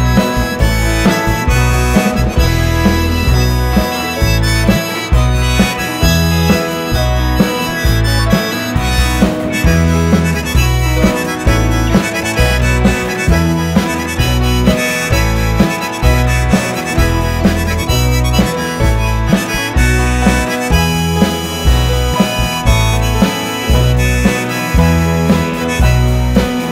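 Live band instrumental break led by a harmonica played in a neck rack, over electric guitar, bass and a steady drum beat.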